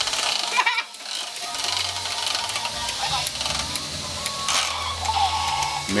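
Children's toy merry-go-round running, with a steady motor hum under a little tune, amid children's voices.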